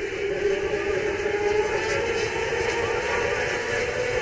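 Engines of a pack of Formula 500 open-wheel speedway cars running together as they circle the dirt oval, a steady drone that wavers slightly in pitch.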